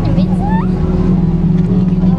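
A steady, loud low mechanical drone like an engine running, with a voice briefly heard about half a second in.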